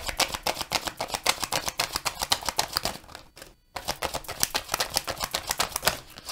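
A deck of tarot cards being shuffled by hand: a fast run of card slaps and riffling clicks, pausing briefly about midway.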